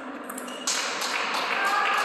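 Table tennis ball clicking off the bats and table in the last strokes of a rally, then, about two-thirds of a second in, a sudden loud shout and raised voice as the point ends.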